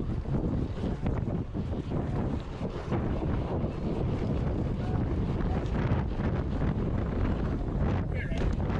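Heavy wind rushing over the camera's microphone as a BMX bike races down a packed-dirt track, with frequent short rattles and knocks from the bike.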